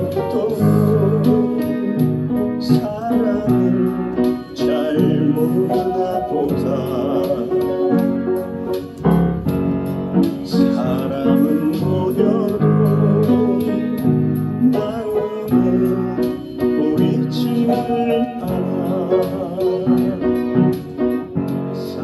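Upright piano played by hand in a slow ballad accompaniment, with a singing voice with vibrato over it.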